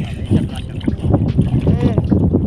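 Wind buffeting the microphone while a wet nylon fishing net is pulled from the water, with water splashing and dripping off the mesh and a few short knocks; a voice speaks briefly near the end.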